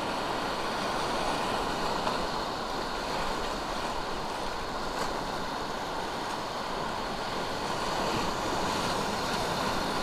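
Whitewater rapids rushing steadily around a canoe running through them, a constant roar of water without a break.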